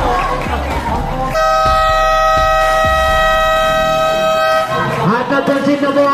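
Electronic basketball game buzzer sounding one loud, steady tone for about three and a half seconds, then cutting off sharply: the horn that ends the game.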